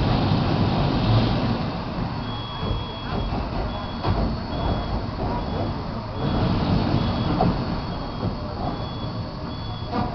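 Western Maryland 734, a 2-8-0 steam locomotive, sitting under steam as it is swung round on a turntable: a steady low rumble and hiss. From about two seconds in, a high electronic beep repeats roughly every half second or so.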